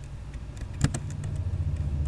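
Computer keyboard keystrokes, a few separate clicks with one sharp loud one a little under a second in, over a steady low hum.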